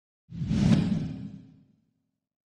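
Editing whoosh sound effect for an outro subscribe-button animation: one short swell of rushing noise that starts about a third of a second in and dies away by about a second and a half.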